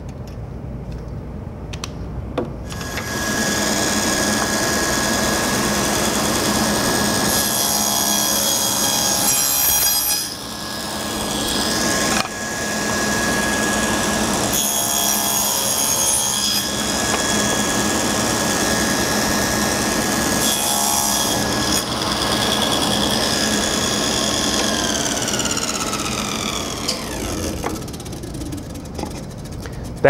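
Table saw with a dado blade set starting up and cutting rabbets across the ends of drawer fronts and backs, with a dip in level around ten and again twelve seconds in. Near the end it is switched off and winds down with a falling whine.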